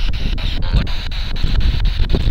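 A spirit box sweeping through radio channels: steady static hiss broken by rapid, regular clicks as it jumps from station to station. Strong wind buffets the microphone with a low rumble underneath.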